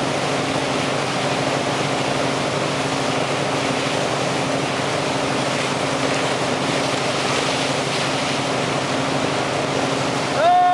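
A towboat's engine running at a steady speed, a constant low drone under the loud, even rush of the churning wake water.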